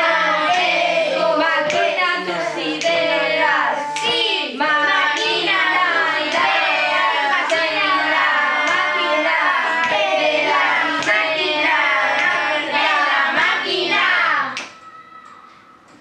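Children's voices singing a piece in several parts from score, with sharp percussive hits recurring through it, and it breaks off abruptly near the end. The teacher judges that the third part came in one beat early.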